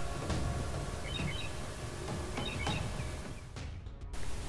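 Faint outdoor night ambience over a low rumble, with a short chirping call heard twice, about a second and a half apart. The sound fades away just before the end.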